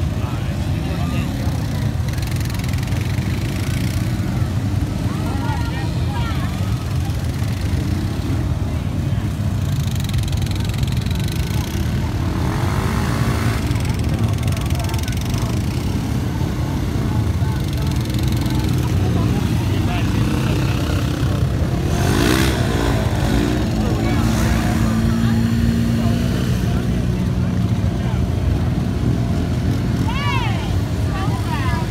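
Several ATV engines running as four-wheelers drive through a mud pit: a steady low engine drone throughout, with a few brief revs rising and falling in pitch partway through.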